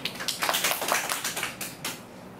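Audience applauding: a short round of hand clapping that starts a moment in and stops just before the end.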